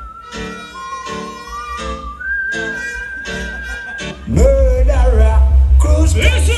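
A recorded tune played over a sound system: a thin high melody in long held notes over a choppy chord pattern. About four seconds in, heavy bass drops in and the music gets much louder.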